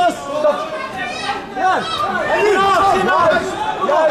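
Overlapping voices of several people talking and calling out.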